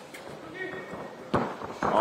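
Court-side background with faint voices, then a single sharp thud of a basketball about two-thirds of the way through and a louder rush of sound right at the end.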